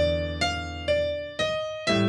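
Piano playing a slow bebop approach line: single right-hand notes struck about every half second over a held left-hand E minor 7 chord. It resolves near the end onto a struck A7 chord that rings on, the line landing on E, the fifth of the A chord.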